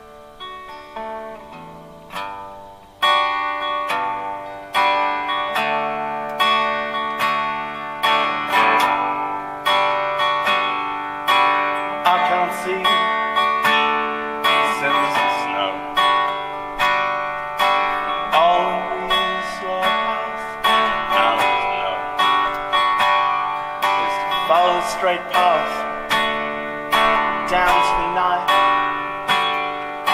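Solo acoustic guitar opening a song: a few soft picked notes, then, from about three seconds in, chords struck in a steady rhythm and left to ring.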